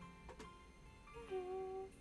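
A woman humming one short held note that slides down into its pitch about a second in, over quiet backing music with sustained keyboard-like tones.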